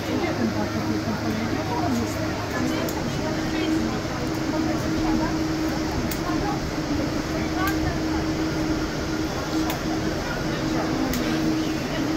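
Indistinct voices of people talking beside a stopped tram, over a steady low hum with a few light clicks.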